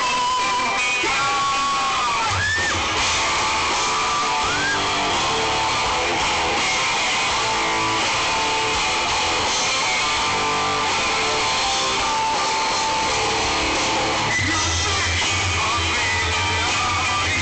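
Live rock band playing over a concert PA, heard from within the crowd: electric guitar lines with bent notes, over bass that drops in and out.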